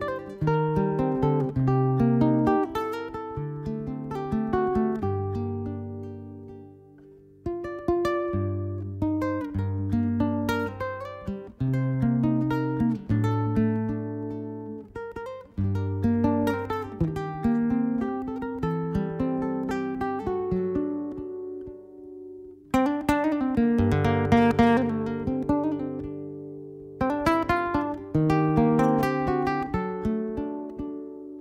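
Nylon-string classical guitar played solo in a slow air: single plucked melody notes over bass notes, each phrase left to ring and fade. It almost dies away about seven seconds in, and there is a fuller burst of strummed chords about two-thirds of the way through.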